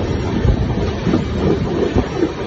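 Running noise of a moving Indian Railways passenger coach: a steady, loud rumble of the wheels on the track with irregular low thumps.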